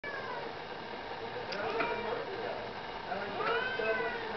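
Domestic cat meowing several times, the calls gliding in pitch, with a longer rising-and-falling meow near the end.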